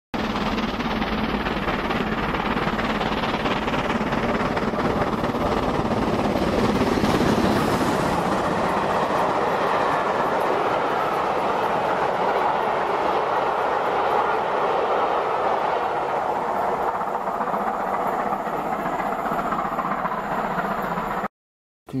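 Model train running past on layout track: a steady rumble of wheels on the rails with the locomotive's motor, swelling a little as it passes and cutting off abruptly just before the end.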